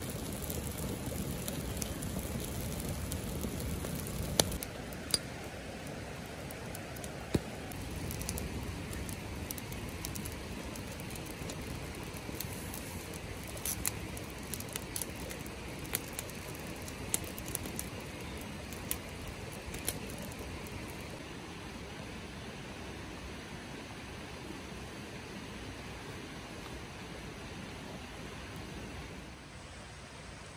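Campfire of kindling and green conifer boughs crackling, with sharp single pops scattered through the first two-thirds and fewer later, over a steady background hiss.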